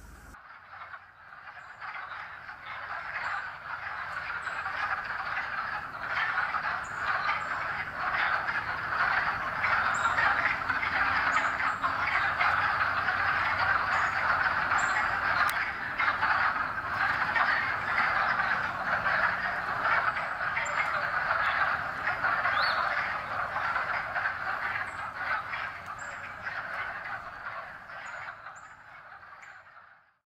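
A dense, steady chorus of many calling animals, fading in over the first few seconds and out near the end, with faint high chirps over it.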